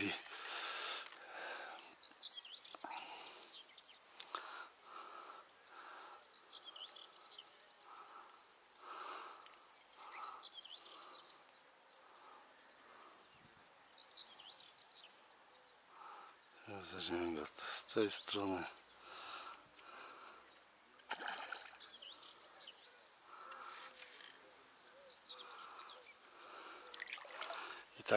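Faint outdoor quiet with scattered short bird chirps throughout, and a person's voice speaking briefly a little past the middle.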